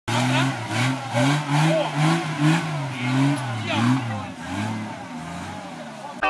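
Off-road 4x4's engine revving up and down again and again under load as it crawls up a rutted dirt gully, the revs rising and falling about twice a second and fading toward the end.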